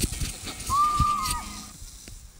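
Zipline ride: the trolley running along the cable and wind rushing on the microphone. A single high, drawn-out squeal lasts about a second in the middle, then fades.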